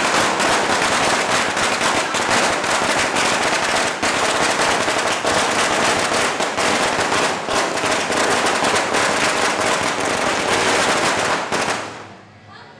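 A long string of firecrackers going off in a rapid, continuous crackle of bangs, which stops abruptly just before the end.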